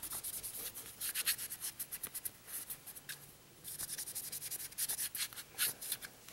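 Cloth patch rubbing over a Smith & Wesson M&P Shield pistol, wiping excess oil off the slide and frame in quick back-and-forth strokes, with a short pause a little after halfway.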